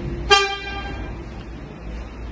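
A single short vehicle-horn toot about a third of a second in, the loudest sound here, its tone fading out over about a second.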